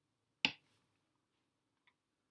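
A single sharp click from working a computer, with a much fainter short tick near the end.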